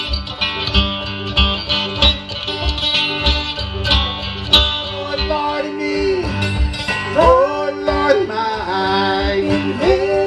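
Live acoustic folk music: a banjo and an acoustic guitar played together, with singing coming in about halfway through.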